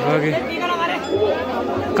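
Chatter of a crowd, several people talking at once with no single voice in front.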